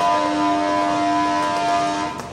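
A loud, steady whine of several held tones that neither rise nor fall.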